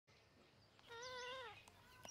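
A single short animal call with a wavering pitch, a little under a second in, against near silence.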